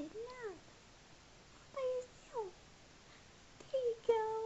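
A 4-month-old baby's short cooing squeals: four separate calls, the first rising and falling in pitch at the start, then a level one and a falling one about two seconds in, and a brief falling one near the end.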